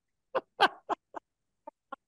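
Laughter in about six short, separate bursts, the last two fainter.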